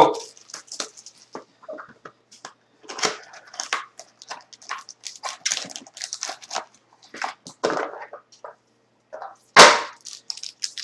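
Crinkling and tearing of plastic wrap and cardboard as a sealed hockey card box is opened by hand: a run of irregular crackles and rips, with one loud sharp noise near the end.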